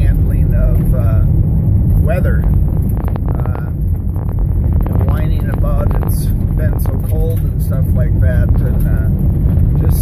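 Road noise in a moving car's cabin: a steady low rumble of tyres, first on pavement and then on gravel, with a man talking over it at intervals.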